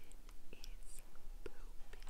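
A faint whispered voice with a few soft clicks.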